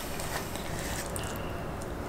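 Faint clicks of plastic forks scooping loaded fries from foam takeout trays, over steady room noise.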